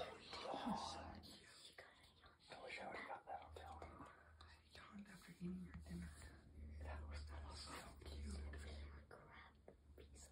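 Quiet room with faint whispering voices and a low steady hum.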